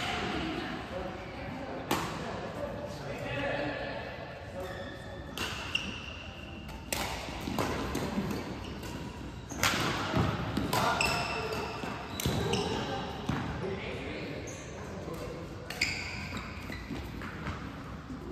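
Badminton rally in a large echoing hall: sharp smacks of rackets striking the shuttlecock at irregular intervals, the loudest cluster about ten seconds in, with short high squeaks that fit court shoes on the floor.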